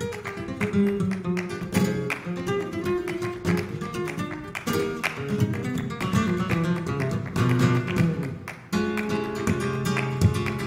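Flamenco guitar playing a bulería, with sharp hand-clapping (palmas) keeping the rhythm. It breaks off briefly near the end and comes back with a strong accent.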